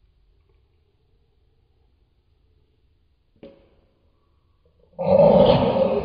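Quiet at first, with a short faint sound about three and a half seconds in. Near the end comes a loud, throaty vocal moan that starts suddenly and fades away over about two seconds: a woman's growl of enjoyment while eating fried fish.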